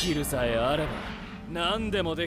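Speech: an anime character speaking a line of dialogue from the episode playing on the reaction screen.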